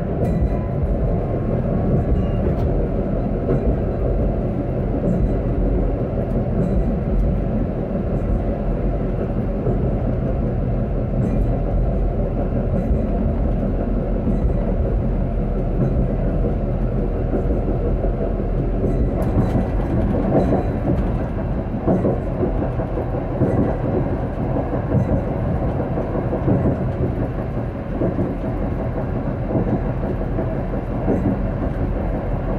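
Tram running along city street track, heard from inside at the front: a steady rumble of wheels on rails and running gear. A faint rising whine at the start, and the sound grows harsher about two-thirds of the way through.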